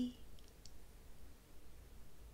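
Quiet room tone with a faint low hum, and two small clicks about half a second in.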